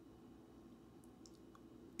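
Near silence: room tone with a faint steady low hum and a few faint small clicks about a second in.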